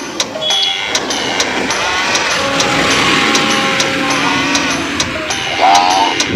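Road traffic noise under a music track with a steady clicking beat about twice a second. Near the end comes a short sung "ah" call from the track.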